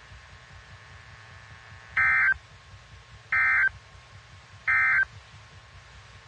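Three short bursts of EAS/SAME digital data tones, a little over a second apart: the End Of Message code that closes a NOAA Weather Radio warning broadcast. A faint steady hiss is heard between the bursts.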